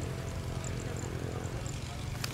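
A steady low rumble, with faint, short, high chirps or ticks scattered through it.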